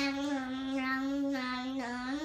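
A young child's voice holding one long, steady sung note, "aah", with a slight drop in pitch about a second and a half in.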